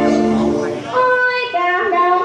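Two women singing a Vietnamese song in turn into microphones: one voice's long held note fades just under a second in, and the other voice takes up the next phrase, higher, at about one second.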